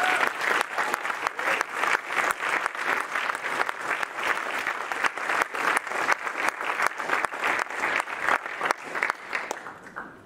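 Audience applauding, many hands clapping, dying away near the end.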